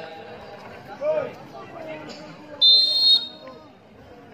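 Referee's whistle, one short blast of about half a second in the middle, the usual signal for the server to serve. Crowd voices and chatter run underneath.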